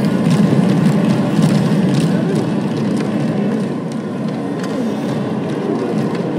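Ice-level hockey arena sound during a fight: a steady din with faint shouting voices and scattered sharp knocks.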